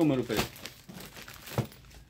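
Clear plastic garment bags crinkling as packaged T-shirts are lifted and handled, with one sharper snap about one and a half seconds in.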